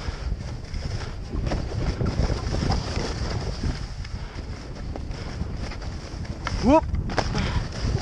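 Wind buffeting the microphone and skis sliding over snow during a downhill run, a continuous rough rushing noise. Near the end a person gives a rising "whoop".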